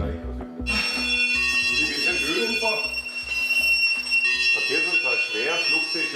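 Emergency alarm going off at an air-rescue helicopter station: a steady high-pitched alarm tone that starts about a second in and holds for about four seconds, calling the crew out to a serious traffic accident. Background music with a steady beat runs underneath.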